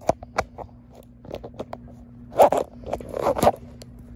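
Close handling noise from the recording device: a few sharp clicks, then two louder scraping rustles about two and a half and three and a half seconds in.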